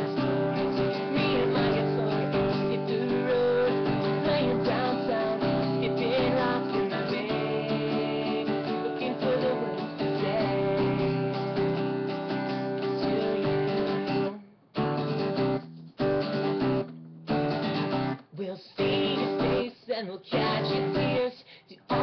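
Acoustic guitar strummed steadily. About two-thirds of the way through, the playing turns into short strummed bursts with brief silences between them.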